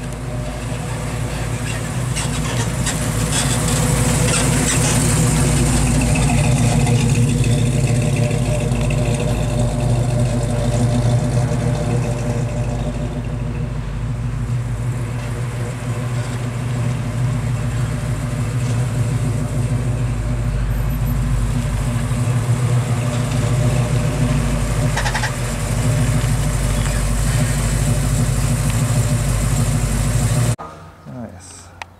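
1957 Chevrolet's V8 running at low speed, a steady, deep, even engine note as the car rolls slowly and pulls into a parking space.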